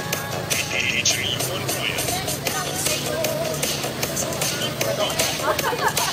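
Dance music with a steady beat and a singing voice.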